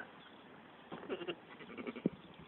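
Sheep bleating faintly in the distance, a short call about a second in and another near the end.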